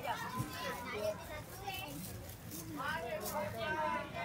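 Bystanders talking over one another close by, several voices overlapping, some of them high-pitched.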